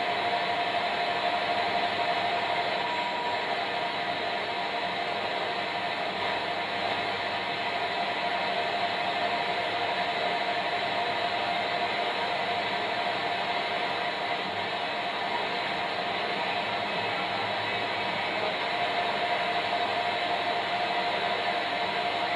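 Steady FM radio hiss from a Unitra T7010 tuner through a loudspeaker, with a faint steady whistle running through it. No station is tuned in while the FM band is being realigned.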